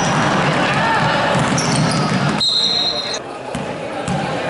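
A basketball dribbled on a hardwood gym floor amid echoing gym chatter. About two and a half seconds in the sound cuts abruptly to a quieter hall, and a short, steady high-pitched tone follows.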